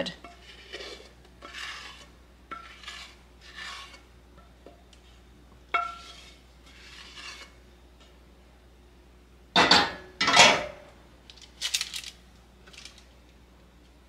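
A spatula scraping thick peanut butter fudge out of a heavy enamelled cast-iron pot in short strokes, with a single clink against the pot about six seconds in. Near ten seconds comes a louder clatter of pot and utensil.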